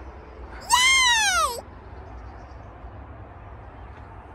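An animal call, once, about a second long, rising and then falling in pitch.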